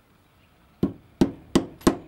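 Claw hammer tapping a replacement bearing into the back of a Mr Steele Silk brushless motor held in a vise: four sharp metallic taps starting about a second in, coming slightly faster each time.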